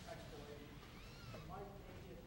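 Faint, indistinct speech: a voice heard off the microphone, too low for the words to come through.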